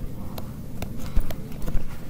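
Stylus tapping and clicking on a tablet screen while handwriting: a run of light, irregularly spaced taps, several a second.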